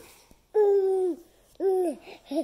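A baby's voice making two drawn-out vocal sounds on a steady pitch: a longer one about half a second in and a shorter one near the end.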